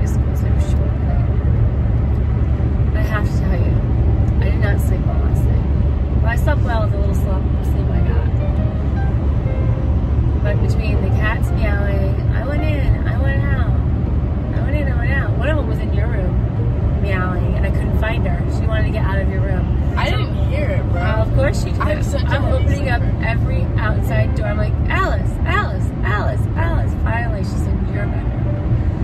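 Steady low road rumble inside a moving car's cabin, with people talking over it.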